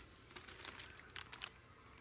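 Faint crinkling of the clear plastic packaging on a pack of pencils as it is picked up and handled, a few light crackles in the first half.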